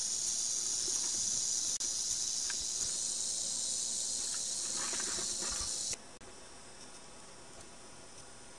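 Rattlesnake rattling: a steady, high, dry buzz, the snake's defensive warning. It stops abruptly about six seconds in.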